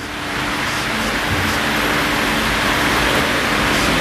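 Steady rushing noise with a faint low hum, swelling in over the first half second and then holding even.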